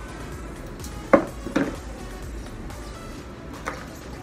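A hard plastic first-aid box knocks down onto a tiled floor: two sharp clatters about half a second apart, the first the louder, and a faint tap near the end.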